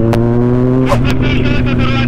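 Motorcycle engine running steadily at cruising speed, heard from on the bike, its pitch rising slightly in the first second. A voice comes in over it about halfway through.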